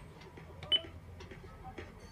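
A short, bright key-press beep with a click from an old Sony cassette car stereo, about three quarters of a second in, as a front-panel button is pressed. A few faint clicks surround it over a low electrical hum.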